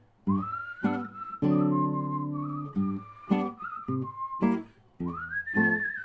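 A man whistling a folk melody over a strummed classical guitar. The first long whistled phrase starts just under a second in and slowly steps down in pitch. It breaks off a little past four seconds, and a second, higher phrase rises in at about five seconds.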